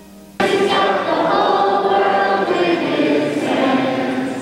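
A choir singing a closing musical phrase, coming in suddenly and loudly about half a second in after a faint held instrumental note.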